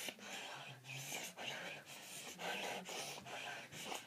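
A boy laughing breathlessly, almost without voice: a run of airy huffs, about two a second.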